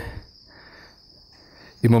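A faint, steady high-pitched whine over quiet room tone during a short pause in a man's speech, which resumes near the end.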